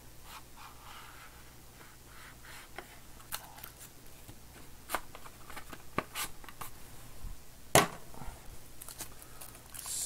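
Hands opening a small cardboard trading-card box: faint scraping and rustling of the card stock, with a few sharp clicks and ticks, the loudest about three-quarters of the way through.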